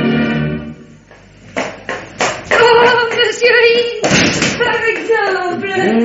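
Organ bridge music fading out about a second in, then a few sharp knocks and voices starting up.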